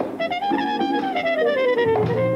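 Big-band jazz ensemble playing, with wind and brass instruments on a held melodic line. It opens on a sharp accented hit, then the line rises slightly and slides slowly downward in pitch.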